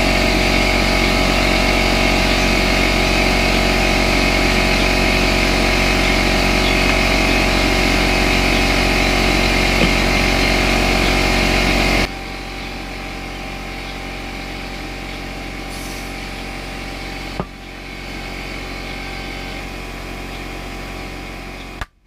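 Loud, steady mechanical hum with no rhythm, dropping abruptly to a quieter steady hum about halfway through, with a single knock later on.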